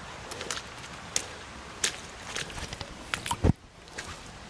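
Footsteps wading in shallow pond water over a sawdust bottom: scattered sharp clicks and knocks, and one heavier low thud near the end.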